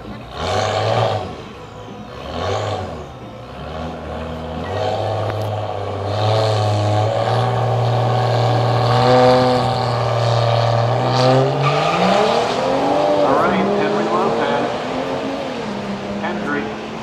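BMW 335i and Infiniti Q50S engines at a drag-strip start line: two short revs, then revs held steady while staged, then the launch about twelve seconds in, the engine note climbing and dropping through gear changes as the cars pull away.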